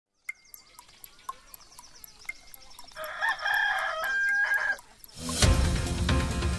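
Clock ticking about four times a second under a countdown, with a rooster crowing from about three seconds in for nearly two seconds. Theme music starts loudly just after five seconds.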